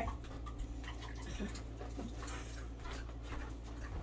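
Mini pig quietly chewing a treat, with faint clicks and two short, low grunts about one and a half and two seconds in, over a steady low room hum.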